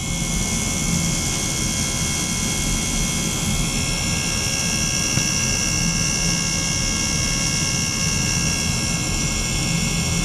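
Ultrasonic cleaning bath running with a water-filled bottle immersed: a steady hiss with several high ringing tones over a low hum. One high tone grows stronger about four seconds in.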